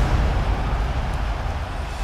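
Deep rumbling sound-design tail of a cinematic impact hit in an intro soundtrack, slowly fading, with no melody over it.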